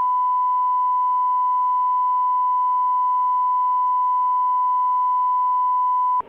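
Broadcast line-up test tone: a single steady pure tone at 1 kHz, loud and unbroken.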